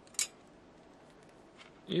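Multimeter test probes being handled and repositioned on a circuit board: one short, sharp scratch about a fifth of a second in, then a few faint ticks over low room tone.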